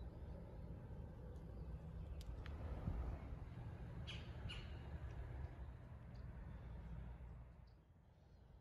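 Birds calling, with two short calls close together about four seconds in, over a low steady rumble that fades away near the end.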